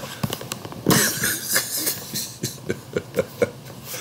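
A man laughing in a run of short, breathy bursts, picking up about a second in.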